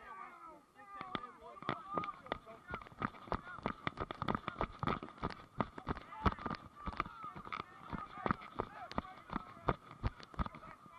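Running footsteps on a grass pitch heard through a body-worn camera: a string of dull thuds about three a second, starting about a second in. Voices shout in the background.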